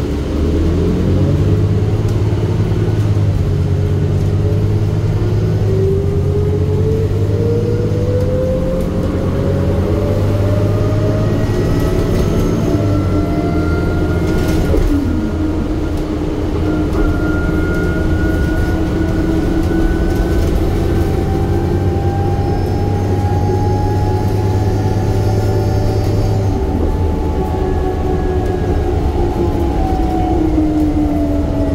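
Inside a 2008 New Flyer C40LFR compressed-natural-gas transit bus under way: engine and driveline running with a whine that climbs slowly in pitch as the bus gathers speed over most of the stretch, then drops as it slows near the end.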